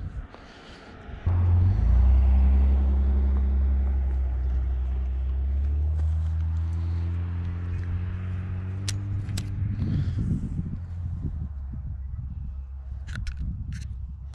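A motor vehicle's engine droning as it passes by, starting suddenly about a second in, then slowly dropping in pitch and fading away. A few faint clicks come later.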